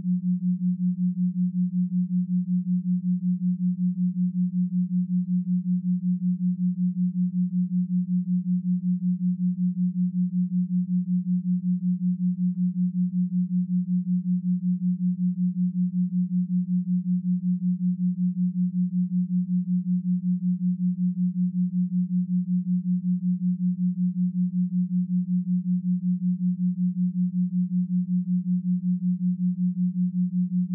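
Binaural-beat track: one steady low sine tone that pulses evenly in loudness several times a second, with no other sound.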